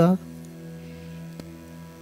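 A steady hum made of several held tones, with a faint click about halfway through.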